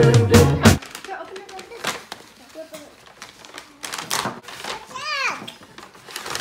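Background music cutting off abruptly less than a second in, followed by the crinkling and rustling of a brown paper gift bag being opened by hand, with a young child's voice briefly about four to five seconds in.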